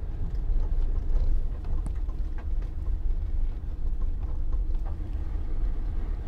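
In-cabin sound of a 2013 Land Rover Defender 90's 2.2-litre four-cylinder turbodiesel under way: a steady low engine drone mixed with road noise.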